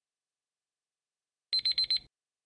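Quiz countdown timer's alarm sounding as the timer runs out: a rapid, high-pitched electronic beeping that starts suddenly about one and a half seconds in, after silence.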